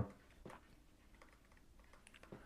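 A few faint clicks over near-silent room tone, the clearest about half a second in.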